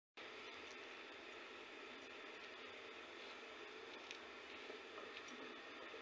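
Near silence: a faint, steady hiss with a few small, soft clicks.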